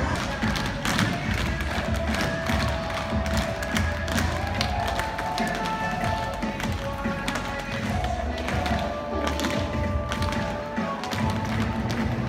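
Recorded dance music playing, with many sharp irregular taps and thuds from the dancers' shoes striking the stage floor.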